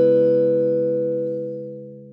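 The closing chord of a short musical logo jingle, ringing on and slowly fading away.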